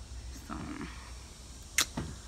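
A single sharp click near the end, brief and the loudest sound here, over a low steady background hum.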